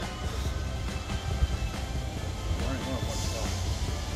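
Background music over the low, steady rumble of a Pacer diesel railbus approaching the platform.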